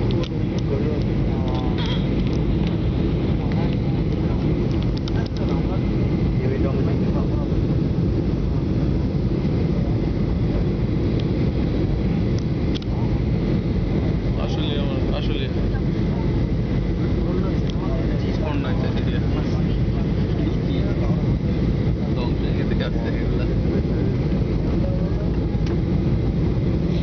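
Steady drone of an airliner cabin heard at a window seat: jet engines and rushing airflow, unbroken and even throughout.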